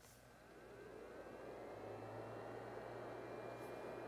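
iluminage Touch IPL hair-removal device powering up just after a button click: a faint whirring hum builds over the first second or two, with a thin electronic whine that rises in pitch and then holds steady.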